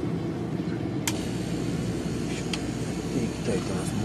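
Hobby spray booth's exhaust fan running with a steady hum, with a single light click about a second in.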